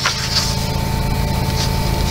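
A coloring book's paper page being turned, a soft rustle near the start, over a steady background hum.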